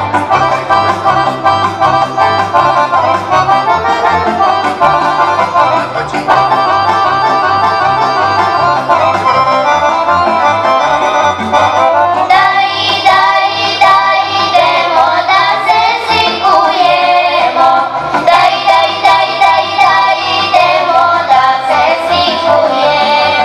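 Accordion playing a folk tune over a steady alternating bass, the melody growing fuller about halfway through.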